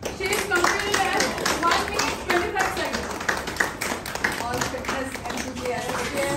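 A small group applauding, with rapid hand claps and voices calling out over them, in acclaim for an announced winner.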